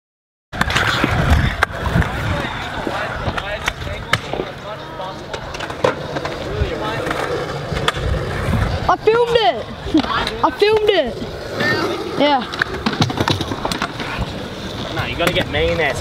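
Stunt scooter wheels rolling over skatepark concrete, with repeated clacks and knocks from the decks hitting the ground.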